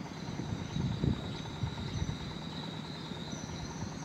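Outdoor ambience: insects droning with a steady high tone over an uneven low rumble; no train is passing.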